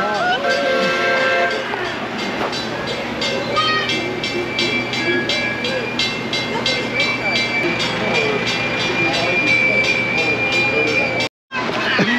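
Small park train running past along its track, with an even clatter about three times a second and a long steady tone through the second half; it cuts off suddenly near the end.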